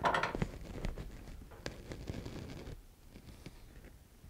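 Light handling noises on a workbench: a soft rustle and scattered small clicks and taps as a steel ruler is picked up and laid against the guitar rim's wooden end block, settling quieter about three seconds in.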